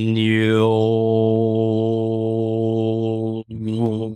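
A man chanting one long, low held tone, the vowel shifting in the first half second. Near the end the tone breaks off briefly for a breath and starts again.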